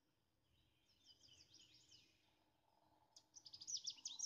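Faint birdsong of short, quick chirps: a sparse few about a second in, then a livelier run of chirps near the end.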